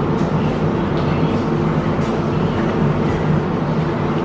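A steady low mechanical hum with several held tones, unchanging in level throughout.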